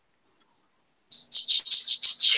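A bird chirping in a quick, even series of short, high chirps, about six or seven a second, starting about a second in.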